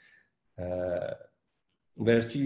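A man's voice holding one short, flat-pitched hesitation sound of about half a second, between silent pauses in a lecture.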